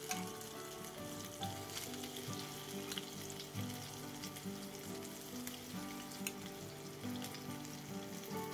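Egg-battered shrimp pancakes sizzling in oil in a frying pan, a steady crackle with scattered small pops.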